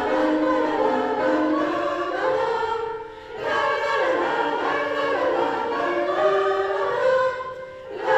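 A women's choir singing in several voices, sustained sung phrases with a short pause between phrases about three seconds in and another near the end.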